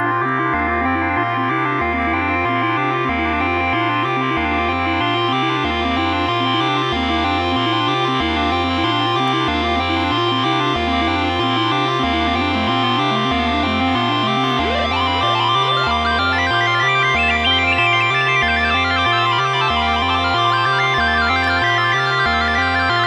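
Moog Subharmonicon analog synthesizer playing a sequenced pattern: a repeating bass line under held higher tones. About two-thirds of the way through the pitch glides, and a brighter run of higher notes comes in after that.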